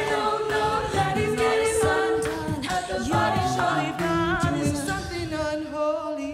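Live a cappella group singing a pop mashup: a female lead voice over sustained choral backing, a sung bass line and beatboxed vocal percussion keeping a steady beat.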